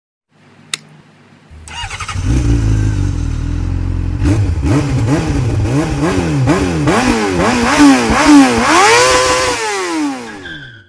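Engine start-up and revving sound effect. A click, then the engine catches and runs steadily, then a string of quick revs about two a second, each climbing higher. It ends in one long rev that falls away.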